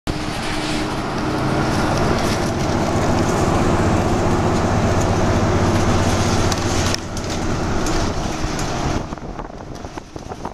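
Engine and road noise of a moving city bus heard inside the passenger cabin: a loud, steady rumble with a low hum, dropping about seven seconds in and again near the end as the bus eases off.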